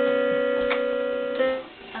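A single steady electronic note from a toy keyboard, held for about a second and a half with a click partway through, then fading out.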